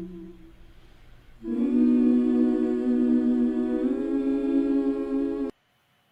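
Wordless vocal music: long held hummed or sung notes. A note fades out at the start, a louder one enters about a second and a half in and steps up in pitch near four seconds, then the music cuts off abruptly shortly before the end.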